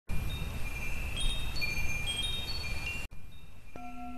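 Wind chimes ringing with scattered high, clear notes over a low noisy rumble, which cuts off abruptly about three seconds in. Fainter chime notes carry on, and a steady low tone begins shortly before the end.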